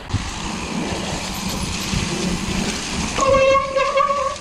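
Mountain bike rolling down a muddy woodland trail: a steady rumble of tyres, wind and rattles. About three seconds in, a steady honking tone is held for about a second and a half.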